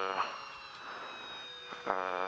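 Onboard sound of a Jaguar Gen3 Formula E car's electric powertrain running at low, steady speed: a few flat, steady whine tones over a hiss of tyre and road noise. The car is crawling back to the pits with a suspected fault at the front end, around the front drive shaft.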